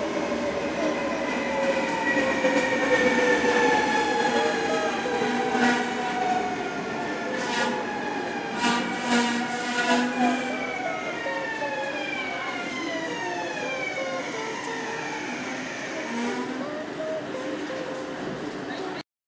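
NS double-deck electric train braking into an underground platform, its motor whine falling steadily in pitch as it slows, with a few knocks and squeaks around the middle. The platform hall echoes the sound.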